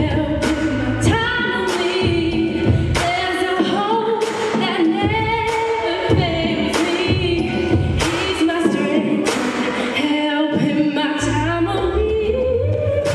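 A woman singing into a microphone over an R&B backing track with a steady beat and bass, amplified through the PA.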